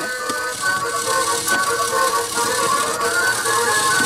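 A toy claw machine running: a simple electronic tune of held notes over the whir of its small motor as the claw moves.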